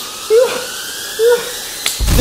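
A man's slow, drawn-out villain laugh: single 'ha's about a second apart, over a faint rising tone, with a sharp click near the end.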